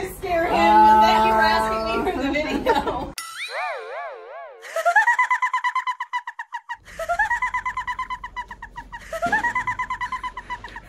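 Voices for about three seconds, then an abrupt cut to edited-in comedy sound effects: a wobbling, warbling tone, followed by three rising whistle-like tones that each settle into a fast, steady trill.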